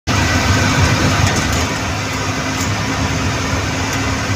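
Bus engine running steadily under way, heard from inside the cab, with road noise.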